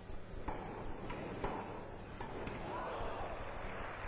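Tennis ball struck by rackets four times in a rally, the knocks irregularly spaced, followed about halfway through by spectators applauding.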